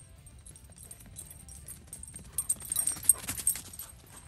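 A dog's paws striking a dry dirt trail littered with leaves as it runs, a quick flurry of footfalls that grows loudest in the second half.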